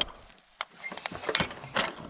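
An open, rusty padlock and steel door hasp being handled: a few scattered metallic clicks and rattles, the loudest about a second and a half in.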